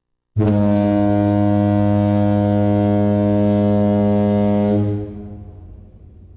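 Ship's horn sounding one long, low blast of about four and a half seconds. It starts abruptly a third of a second in and dies away in a fading echo near the end.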